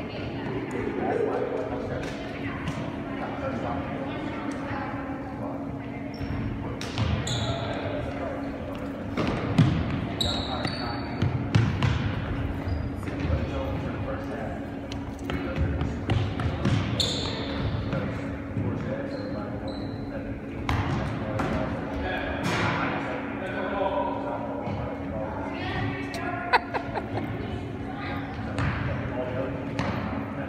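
A soccer ball being kicked and bouncing on a hard indoor floor, many scattered knocks in a large hall, over a murmur of players' voices. Short high squeaks come now and then, and a steady low hum runs underneath.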